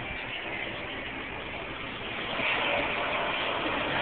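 Jet airliner on its landing approach, its engine rush steady at first and growing louder from about two seconds in as the plane comes closer.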